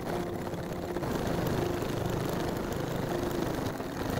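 Domestic electric sewing machine running steadily, its needle stitching rapidly through thick layered canvas.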